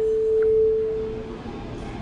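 Cruise ship public-address chime: the last, higher note of a three-note chime rings as one steady tone and fades out about a second and a half in. It is the attention signal for a shipboard announcement.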